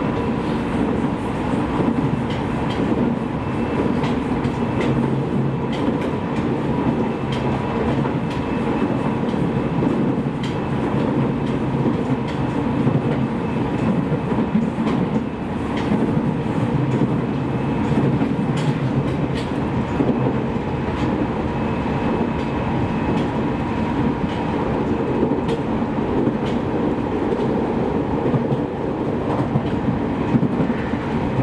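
E501 series electric train running steadily at speed, heard from inside the passenger car: continuous rolling noise with a faint steady whine and scattered clicks of the wheels over the rails.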